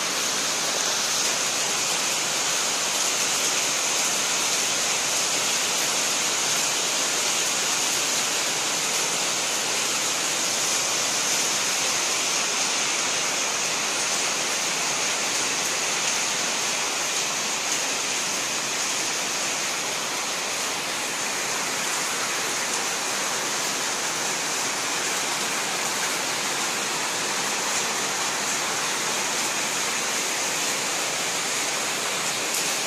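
Steady, even rushing hiss with no rhythm or change, brightest in the high treble.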